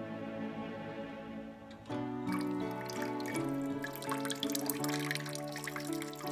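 Background music with sustained notes. From about two seconds in, a kitchen tap runs, its stream splashing as it falls.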